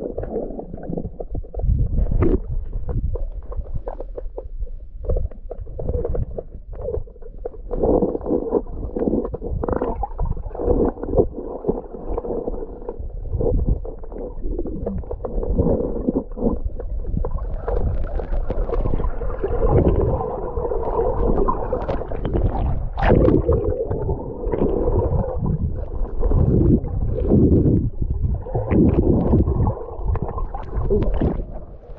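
Muffled, rumbling gurgle of moving river water picked up by a camera held underwater, with irregular knocks and bumps throughout.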